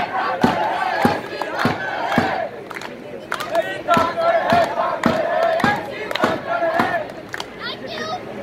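A group of voices chanting together in unison over a hand-held frame drum beaten about twice a second. The chant breaks off briefly about three seconds in, then carries on and stops shortly before the end.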